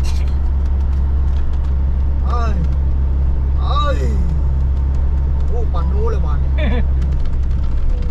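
Car cruising at highway speed, heard from inside the cabin: a steady low road and engine rumble.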